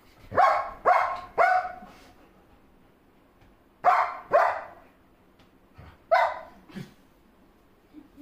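German shepherd barking protectively: six short, loud barks in three bursts of three, two and one, with quiet gaps between.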